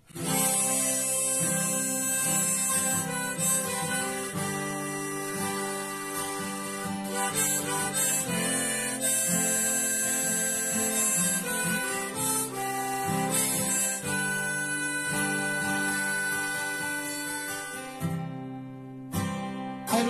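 Harmonica in a neck holder playing a melody of held notes over a strummed acoustic guitar: a folk song's instrumental intro. The music starts abruptly, and near the end the harmonica drops out for about a second while the guitar carries on.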